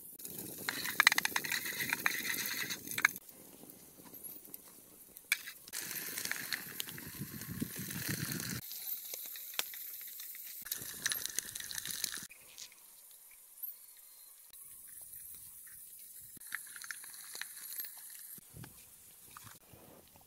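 Chopsticks stirring and tapping in a metal cooking pot over a wood fire, with running water behind. The sound changes abruptly several times, with scattered sharp taps and clicks.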